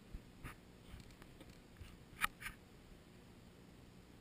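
Faint, scattered clicks and taps, about half a dozen, the loudest about two and a quarter seconds in with a smaller one just after.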